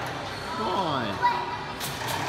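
A voice sliding down in pitch, then a single thump about a second and a quarter in, over a background of music and chatter echoing in a large hall.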